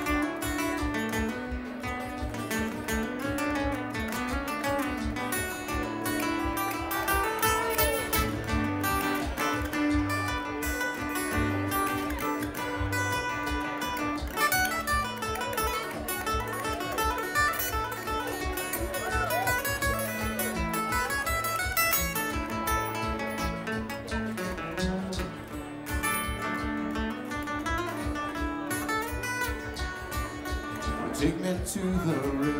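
Live instrumental break of fast string-band music: two acoustic guitars picking and strumming over a steady beat from a one-string gas-tank bass.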